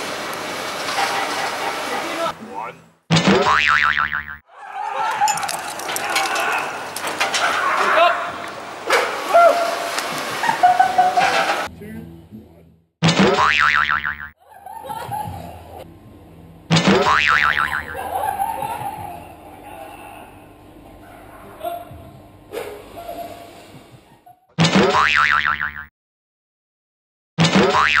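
A cartoon 'boing' sound effect dubbed in about five times, each starting suddenly, to bleep out swearing. Between the boings is a man's yelling.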